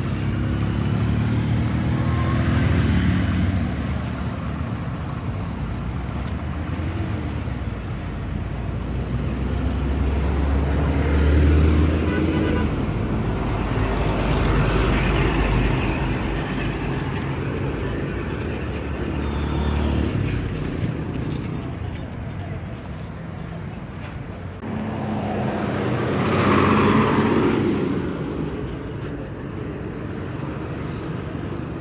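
Road traffic passing close by: motorcycle and car engines, with a heavy lorry's low engine rumble swelling and passing in the middle and another vehicle going by near the end.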